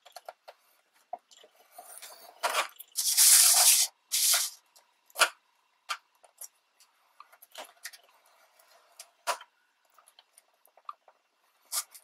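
A scoring stylus drawn along the grooves of a scoring board through a sheet of scrapbook paper: a few short scratchy strokes, the loudest about three seconds in and lasting nearly a second, amid light taps and paper handling.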